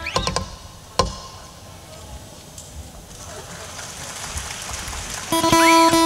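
Music breaks off, followed by a few seconds of faint background noise. About five seconds in, an Isan pong lang folk ensemble starts playing, led by the plucked phin lute with a bending note.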